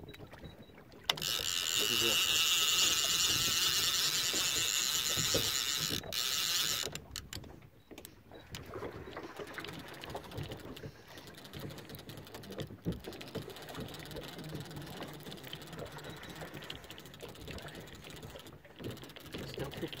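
Multiplier fishing reel's drag giving out line with a loud, high, steady buzz as a hooked fish makes a run, starting abruptly about a second in and stopping about seven seconds in. After it come fainter clicks and knocks from the reel and rod.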